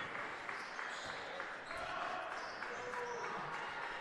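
Faint gymnasium ambience during a basketball game: crowd murmur and court noise from the live game.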